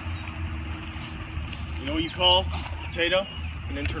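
Short, unclear voice sounds about two and three seconds in, over a steady low rumble.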